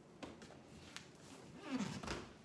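Quiet rustling and a few small clicks from canvas and leather handbags and pouches being handled and set down on a wooden floor, growing louder near the end.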